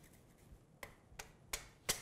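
Four sharp clicks, about three a second, from a flat hand grater as Parmesan is grated over a plate of pasta.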